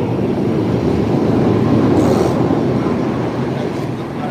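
Loud rumble of a passing vehicle, swelling to its loudest about halfway through and then fading.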